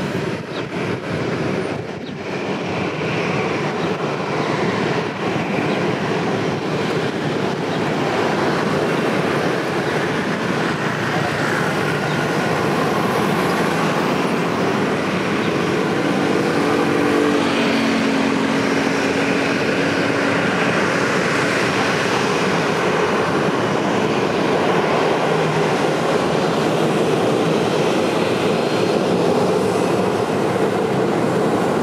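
Boeing 737-800's CFM56 turbofan engines running at taxi power: a steady jet roar and hiss that grows louder as the airliner swings round to line up for takeoff.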